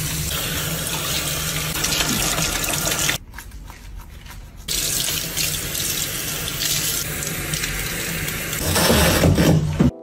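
Tap water running from a pull-out sink faucet into a sink and over a small dog being bathed, a steady rush of water. The flow drops away for about a second and a half around three seconds in, then runs again.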